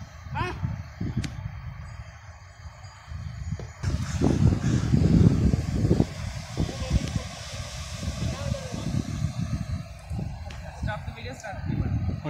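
Wind buffeting the phone's microphone in uneven gusts, louder a few seconds in. Faint, indistinct voices come through around the start and near the end.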